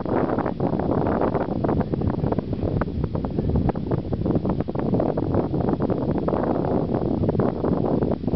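Wind blowing hard across the microphone: a loud, rough, uneven rumble with frequent crackles.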